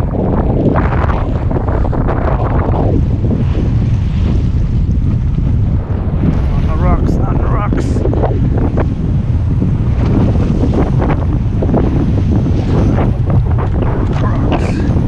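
Strong wind buffeting the microphone in a steady low rumble, over waves surging and breaking against rocks.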